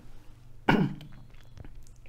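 A man coughs once, sharply, a little under a second in.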